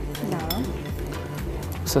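Metal spoon stirring a dry powder mix in a glass bowl, with a few light clinks against the glass.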